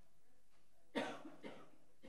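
A woman's short cough into the podium microphone about a second in, followed by a smaller second sound half a second later.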